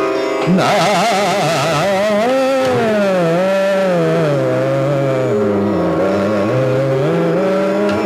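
A male Hindustani khayal vocalist sings a slow alap-style phrase in Raga Multani over a steady drone. The voice comes in about half a second in with a quick shaking ornament on the note, then moves in long, smooth glides up and down.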